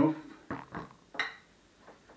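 Glass flip-top preserving jar being handled and set down on a table: a few short knocks and clinks of glass and its wire clip, the loudest a little over a second in.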